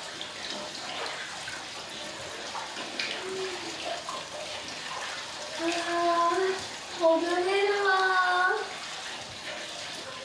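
Hot-spring bath water running and splashing steadily as a bather scoops it over her shoulder. Twice in the second half comes a woman's long, contented "aah" sigh of relaxation.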